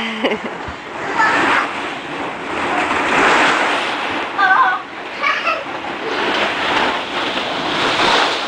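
Plastic balls in a ball pit rustling and clattering as children move through them, a steady wash of noise that swells and falls. A few short, high child's calls break through it.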